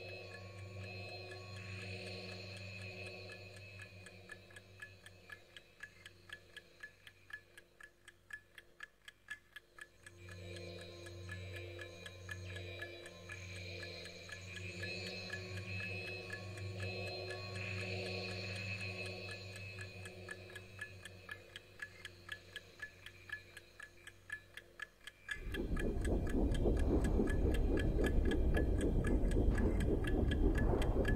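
Ambient electronic music: sustained synthesizer drones that swell and fade, over a steady clock-like ticking a few times a second. About 25 seconds in, a louder low rushing noise suddenly enters under the ticking.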